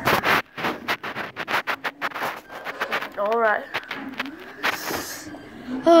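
A rapid run of sharp knocks and clicks, then a short voice sound that rises and falls about three seconds in, and a brief hiss near the end.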